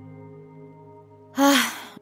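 Quiet, steady background music, then about one and a half seconds in a short, breathy spoken "Ah" from the narrator's voice, like a sigh.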